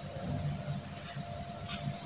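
Scissors cutting through folded silk fabric, quietly.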